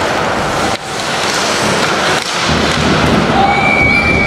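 Loud ice hockey rink noise: skates and sticks on the ice under crowd noise. Near the end a referee's whistle starts a steady high blast.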